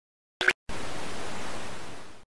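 A short, sharp click of a TV remote's button, the loudest moment, followed a moment later by steady television static hiss that fades slightly near the end.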